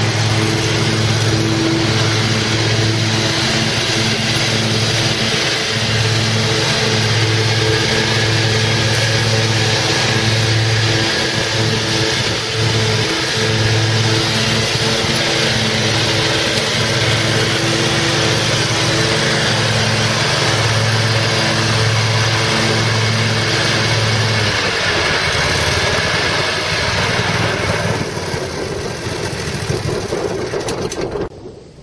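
2002 Exmark 52-inch Turf Tracer HP walk-behind mower's Kawasaki FH500V V-twin engine running steadily as the machine is driven across grass. The engine note drops about 25 seconds in.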